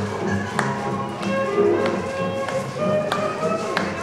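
Dance music playing from a Wurlitzer jukebox: held instrumental notes over sharp percussive hits that come roughly every half second.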